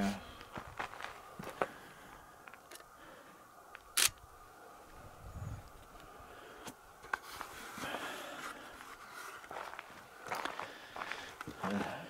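Footsteps on rocky ground, with scattered light clicks and one sharp click about four seconds in.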